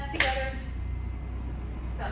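A woman's voice briefly vocalizes in the first half-second, cut through by one sudden sharp sound about a quarter-second in. After that there is only a steady low hum.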